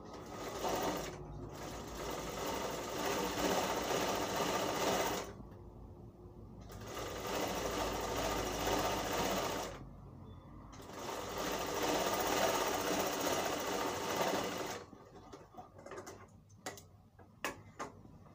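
Sewing machine stitching a one-inch fold of cotton cloth in three runs of about five, three and four seconds, with short stops between. A few light clicks near the end.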